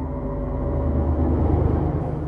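A low, steady rumbling drone made of several low tones, slowly growing louder.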